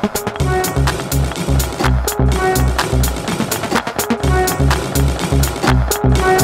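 Minimal techno playing in a DJ mix: a steady four-on-the-floor kick drum, about two beats a second, with ticking hi-hats and short synth tones. The kick comes back in strongly just after the start.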